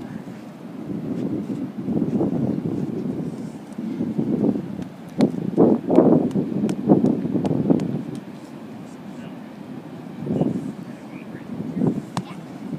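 Indistinct chatter of children at play, with wind on the microphone and a few light clicks around the middle.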